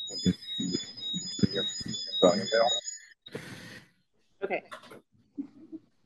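Video-call audio feedback: thin high-pitched ringing tones over garbled, echoing speech, which cut off about three seconds in, followed by a short burst of hiss. The echo comes from an unmuted second device in the same meeting room.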